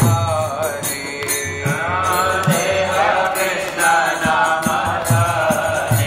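Bengali Vaishnava devotional singing (kirtan) with a gliding melodic line, accompanied by a hand drum beating steadily and small hand cymbals striking in rhythm.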